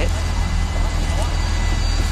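Steady low rumble with an even hiss: outdoor background noise picked up by a phone's microphone.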